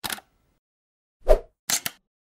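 Animated logo sound effects: a short click, then a louder pop a little over a second in, then two quick clicks near the end.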